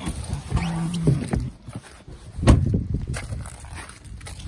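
Rustling and handling noise from a person climbing out of a pickup truck, with one heavy thump about two and a half seconds in and a few lighter knocks around it.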